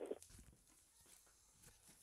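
Near silence: quiet room tone, after a short rough noise breaks off just after the start.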